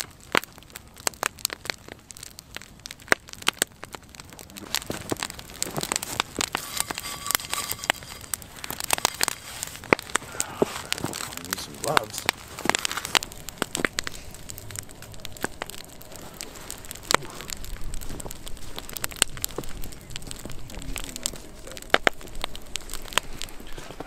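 Wood campfire crackling, with frequent irregular sharp pops.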